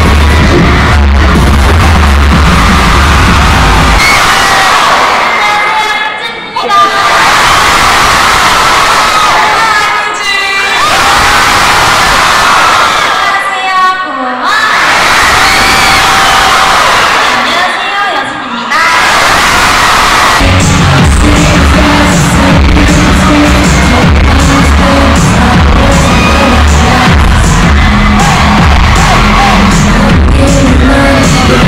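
Loud live concert sound heard from within the audience. Amplified pop music with heavy bass stops about four seconds in. The crowd then cheers and screams for about sixteen seconds. A new song's bass-heavy backing track comes in about twenty seconds in.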